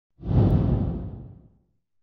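Low whoosh sound effect for an animated logo reveal, starting abruptly a moment in and fading away over about a second and a half.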